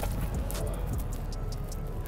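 Quiet background music with a steady low rumble underneath.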